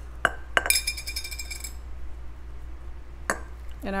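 Glass jar clinking while ingredients are put into it: two sharp taps, then a high ringing clink that hangs for about a second, and another knock about three seconds in.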